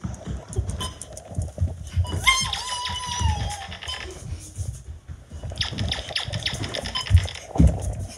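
Running footsteps thudding, with the phone's microphone rubbing and scraping against clothing as it is carried. A high squeal that sags in pitch comes about two seconds in, and a burst of rapid scratchy rubbing comes near the end.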